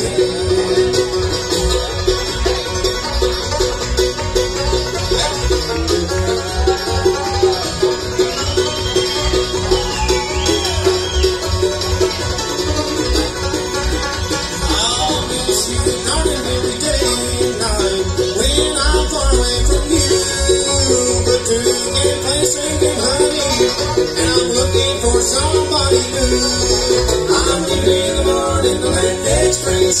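A live bluegrass band playing an instrumental break: fast picked five-string banjo and mandolin over an upright bass keeping a steady beat.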